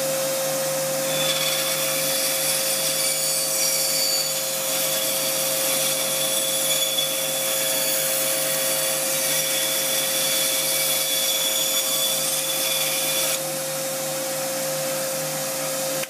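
Rikon bandsaw cutting through a block of wood, with a shop vac running for dust collection at the same time. The machines run steadily throughout; the cutting sound stops about three-quarters of the way through while the saw and vacuum keep running.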